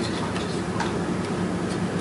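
Steady low background hum of a meeting room, with a few faint ticks or clicks scattered through it.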